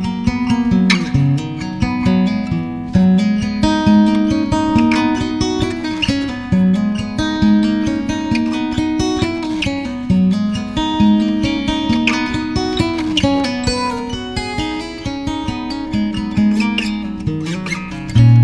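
Music: acoustic guitar playing chords, strummed and picked, in an instrumental stretch of a song.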